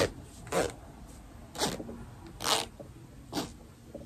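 A plush kitty-shaped hand sanitizer holder handled and squeezed right at the microphone, making four short soft rustling scratches about a second apart.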